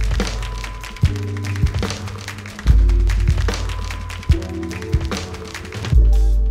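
Live instrumental hip-hop beat: an acoustic drum kit's kick, snare and cymbals over sampled chords from an Akai MPC Live 2 and electric bass through an amp. Deep bass-and-kick hits recur about every one and a half seconds.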